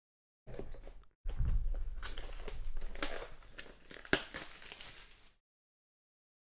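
Cardboard and plastic packaging of an autographed-baseball box being torn open and crinkled by hand, with a couple of sharp clicks about three and four seconds in.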